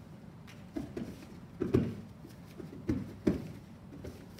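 A handful of dull thumps from two wrestlers' bare feet and bodies on foam mats as they close in and grip up; the loudest come just under two seconds in and again a little past three seconds.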